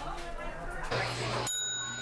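A brass counter service bell struck once about one and a half seconds in, ringing with a clear, steady high tone that fades over about a second.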